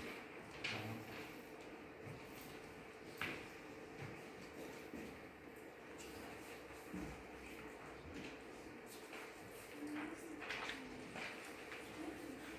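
Faint classroom room tone with a steady low hum, broken every few seconds by soft rustles and light knocks of paper being handled as worksheets are handed out and students start on them.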